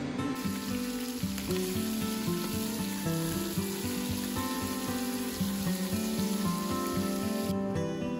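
Vegetables sizzling in hot oil in an aluminium pressure cooker as they are stirred with a wooden spatula, a steady hiss that cuts off shortly before the end. Background music with plucked, guitar-like notes plays over it throughout.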